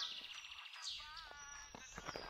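Faint birds chirping in the background, with a few short high calls about a second in.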